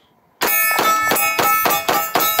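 Sig P6 (P225) 9mm pistol fired in a fast string, about six shots in under two seconds starting about half a second in, each hit answered by the ringing clang of steel targets.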